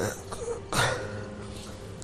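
A person clearing their throat once, briefly, just under a second in.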